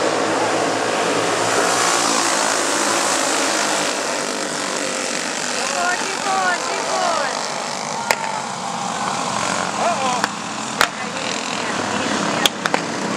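A pack of flathead-engine racing karts running together at speed, a steady overlapping engine drone. A few sharp clicks come near the end.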